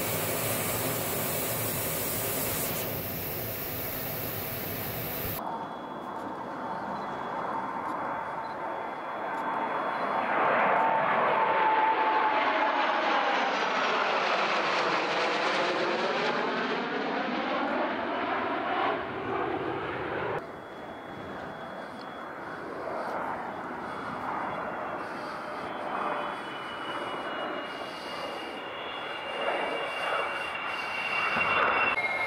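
A pair of Su-30SM fighters flying past, their twin AL-31FP turbofans swelling to a loud jet roar with a sweeping, phasing sound as they go by, then fading. Before it comes a steady rushing hiss of air noise in the cockpit, and after it a quieter jet whine with a faint falling whistle.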